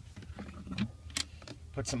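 Hinged plastic lid of a 2014 Ram 2500's in-floor storage bin being unlatched and lifted open: a few light clicks and taps.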